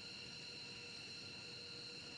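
Faint, steady background hiss with a few thin, steady high-pitched tones running through it.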